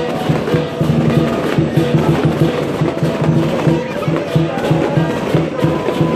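Chinese lion dance percussion: a big lion drum beaten in a fast, steady beat together with clashing cymbals and a ringing gong.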